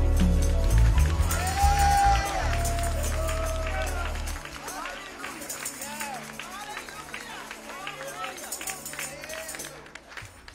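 A gospel band's sustained low closing chord fades out about four and a half seconds in, while church voices call out and hands clap in praise.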